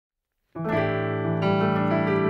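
Piano chord struck about half a second in after a moment of silence and left ringing, with more notes added a little before the end.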